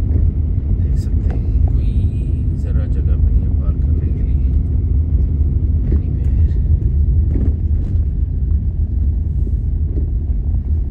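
Car interior noise while driving on a wet road: a loud, steady low rumble from the engine and tyres.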